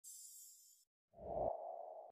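Animated intro sound effects: a brief high, shimmering swish, then after a short gap a low thud with a ringing, sonar-like tone.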